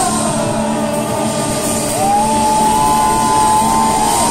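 Rock band playing loud live in a small club: electric guitar and drums, with long held notes that slide up about halfway through, and shouts from the crowd.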